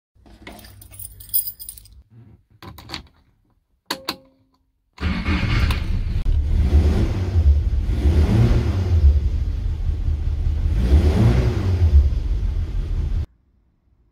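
Keys jingling as they are lifted off a hook, a few sharp clicks, then a Ford Cortina's pre-crossflow four-cylinder engine running loud and low, swelling and easing about three times as the revs rise and fall, before it cuts off suddenly.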